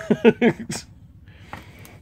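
A man's laughter trailing off in a few short breathy bursts, then a quiet stretch with a couple of faint clicks near the end.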